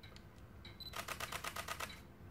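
Olympus OM-D E-M10 Mark II shutter firing eight times in a quick, even burst, about ten clicks a second, from a single press of the button: Handheld Starlight mode capturing the eight frames it stacks into one photo.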